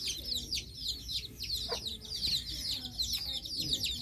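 Many small birds chirping at once: a dense, unbroken stream of quick, high calls, each sliding downward.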